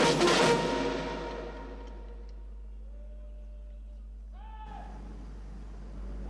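Military band music with drums and brass stops about half a second in and rings out over the next second, leaving a quiet open-air hush. A brief pitched call sounds near the end.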